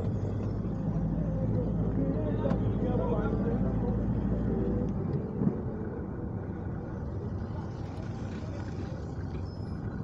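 A car driving slowly, heard from inside the cabin: a steady low engine and road rumble that eases about halfway through.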